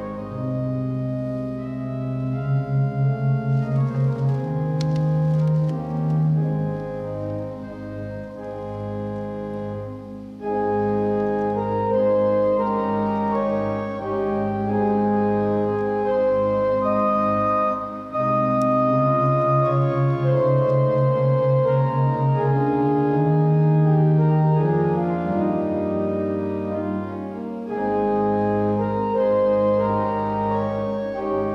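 Church organ playing a voluntary: sustained full chords with moving upper lines. Twice a low note wavers rapidly for a few seconds.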